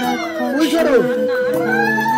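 Women ululating (the Bengali ulu) in wavering, rising and falling high calls over voices, the customary cry at a gaye holud turmeric ceremony. A steady held tone sets in near the end.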